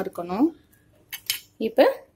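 A glass pot lid with a steel rim being set onto a steel pan, giving a few short metallic clinks about a second in.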